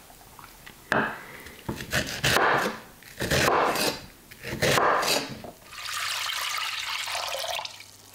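A kitchen knife slicing through fresh rhubarb stalks on a wooden cutting board: four or five crunchy cuts. Near the end comes about two seconds of steady hissing from liquid heating in a pot.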